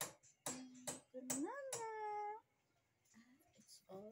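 A woman's voice making short wordless sounds broken by sharp clicks, then one drawn-out vocal sound that rises in pitch and holds for about a second. It goes quiet, then she says "Oh" at the very end.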